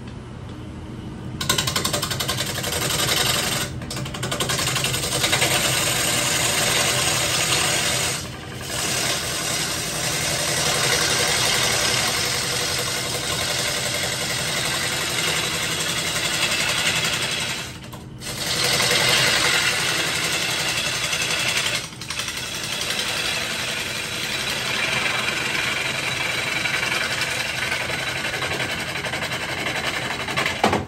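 Wood lathe spinning a walnut bowl, with a hand-held tool held against the turning wood to take more off, a loud steady hiss over the lathe's low hum, starting about a second and a half in. The tool comes off the wood briefly four times, leaving only the hum.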